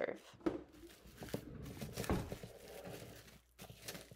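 Plastic cling wrap crinkling and crackling as it is pressed and smoothed around the rim of a bowl, with a few sharp crackles.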